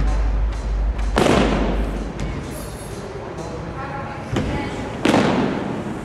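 Two heavy thuds about four seconds apart, each ringing out for a second or so through a large gym hall, from workout impacts during a CrossFit box-jump workout.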